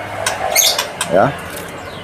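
A zipped cloth bird-cage cover being pulled open by hand: a short scratchy rustle about half a second in, then a click.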